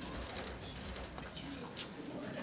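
Quiet classroom room tone with a faint, low murmur of children's voices and small rustles and ticks from desks.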